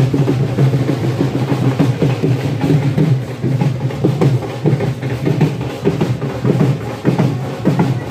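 Drums beating in a steady, dense rhythm, with the drumming running on without a break.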